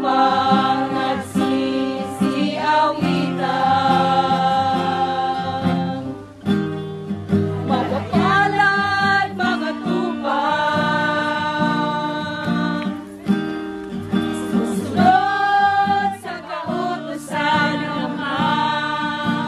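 A Tagalog religious song sung to acoustic guitar, in phrases with long held notes.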